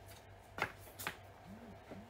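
Two light knocks a little under half a second apart as a handbag is handled and lifted out of its cardboard box.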